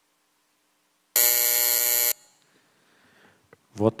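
Plenary chamber's electric buzzer sounding once, a steady buzz of about a second that starts and cuts off sharply, marking the close of a roll-call vote just before the result is announced.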